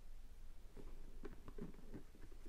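Hands handling a hard plastic pencil box, with a few soft taps and knocks on its case in the second half.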